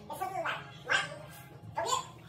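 A dog barking three times in short barks, the middle one loudest.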